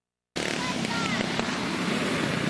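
After silence, sound cuts in suddenly about a third of a second in: dirt go-kart engines running steadily, with people's voices over them.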